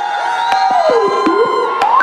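Performance music starting with held tones and a few sharp percussive hits, while a theatre audience cheers and whoops.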